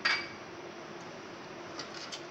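A single metal clink against an aluminium cooking pot, ringing briefly, right at the start, over a steady low hum; a few light clicks of a spoon near the end.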